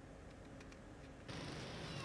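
Near silence of studio room tone, then a little over halfway through, faint steady street traffic noise from passing motorbikes comes in.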